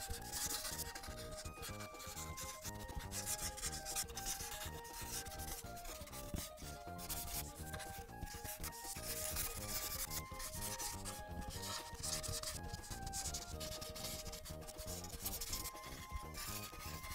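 Ohuhu paint marker tip scrubbing over paper in quick back-and-forth strokes as it fills in a large area. Light background music with a simple stepping melody plays underneath.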